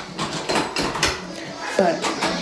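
Light, irregular clatter of small clicks and knocks, like things being handled, with a single spoken word near the end.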